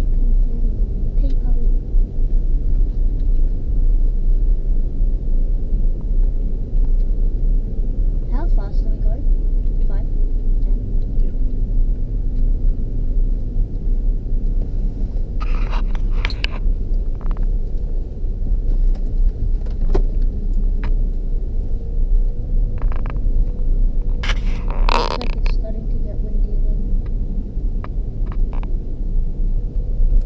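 Steady low rumble of a Land Rover Discovery 3 driving along beach sand, heard from inside the cabin. A couple of brief, sharper sounds cut in about halfway through and again near the end.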